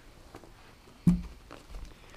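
Faint rustling and small clicks of a quilted jacket liner being handled, with one dull thump about a second in.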